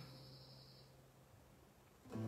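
Near silence: the end of a spoken sound fades out at the very start, then nothing is heard.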